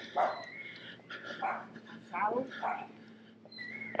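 A dog barking a few short times, faintly, over a low steady hum.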